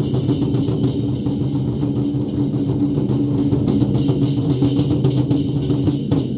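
An ensemble of large Chinese war drums (zhangu) beaten together by a drum troupe in fast, dense, continuous strokes, loud and unbroken.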